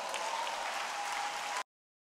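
Audience applauding, with a faint steady tone above it, cut off suddenly about a second and a half in.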